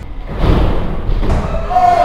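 A skateboard landing hard on a wooden ramp: one heavy thud about half a second in, followed by a rumble.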